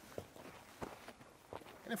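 Footsteps on dry desert dirt: three faint steps about two-thirds of a second apart as a man walks a few feet sideways.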